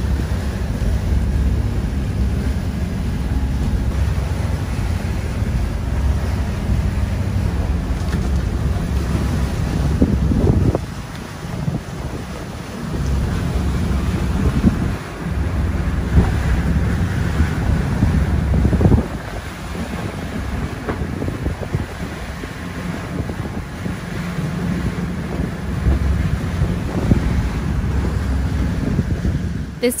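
Wind buffeting the microphone on a sailboat under way at sea, with the rush of waves in sloppy seas. The rumbling noise rises and falls in gusts, easing briefly about 11 and 19 seconds in.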